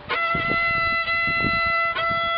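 Violin holding one long, steady high E note, stopped with the fourth finger (pinky) on the A string rather than played on the open E string. This fingering gives the same pitch without the harsh, glass-breaking edge of the open E.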